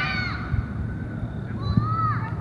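Distant shouted calls from people at a soccer match: a short call at the start and a longer rising one near the end, over a low rumble.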